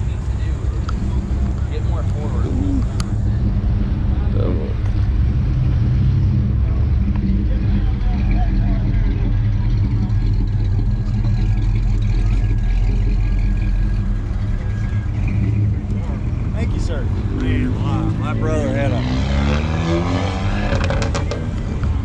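A motor vehicle engine idling, a steady low hum.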